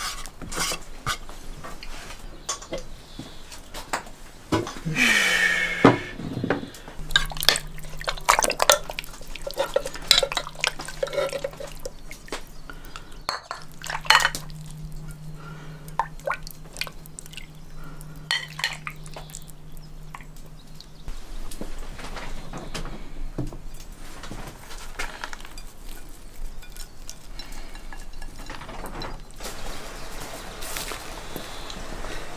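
Kitchen clatter: a metal ladle and dishes knocking against a cast-iron cauldron of stew, with liquid dripping. A low steady hum runs through the middle.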